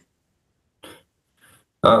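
A pause in conversation: near silence, broken by a faint short sound about a second in, then a man's voice begins with "uh" near the end.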